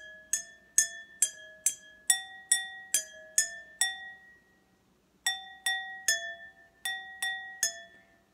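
A pencil tapping a row of stemless drinking glasses that hold different amounts of water, each glass ringing with its own note, played as a simple tune of about two taps a second with a pause of about a second midway. The different water levels give the glasses different pitches.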